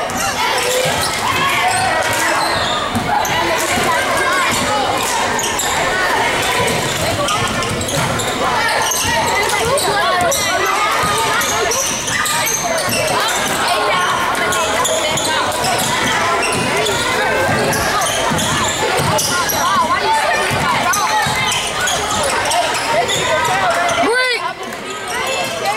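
Crowd voices in a gymnasium during a basketball game, many people talking and calling out at once, with a basketball bouncing on the hardwood court.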